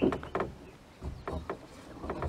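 Footsteps in sandals on a wooden plank floor, then onto a wooden ladder: a few irregular thuds and knocks.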